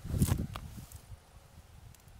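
Carrot foliage rustling briefly as a hand reaches into the leafy tops, a short rustle about a quarter of a second in.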